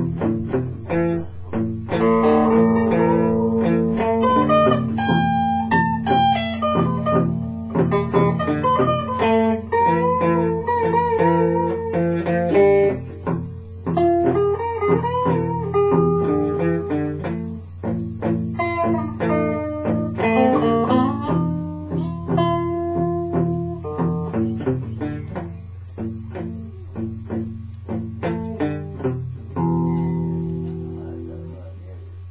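Solo guitar playing a blues riff: a run of plucked single notes and chords, some notes bent and wavering in pitch.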